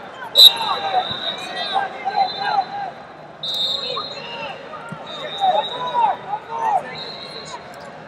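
Wrestling shoes squeaking on the mats in short, repeated chirps, with a shrill referee's whistle blast about half a second in and more whistle tones later.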